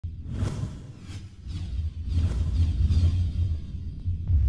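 Intro music built from whoosh effects: about four rising-and-fading swooshes over a deep, steady bass rumble.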